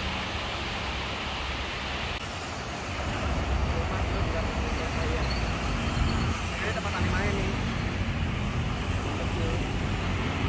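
Steady road-traffic noise of cars and motorcycles passing on a busy multi-lane road. It comes in louder about two seconds in, after a short stretch of quieter indoor station ambience.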